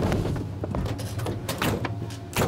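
Several knocks and bangs, clustered about half a second in and again around a second and a half in, over a steady low hum.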